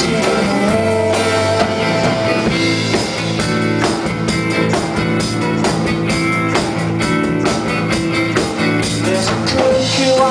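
Live band playing an instrumental passage: guitar chords over a steady beat of drums and tambourine.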